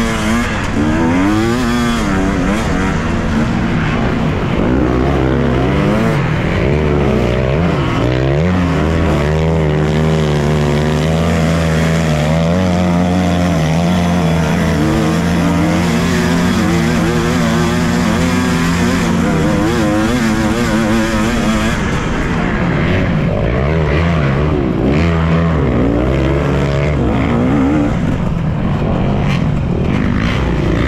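2017 KTM 250 EXC two-stroke enduro bike engine at racing speed, close to the camera. Its pitch rises and falls with throttle and gear changes, is held steady for about ten seconds in the middle, then rises and falls again.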